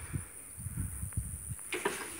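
Steady high-pitched insect chirring in the background, with irregular low bumps of handling or wind on the microphone and a faint click about a second in.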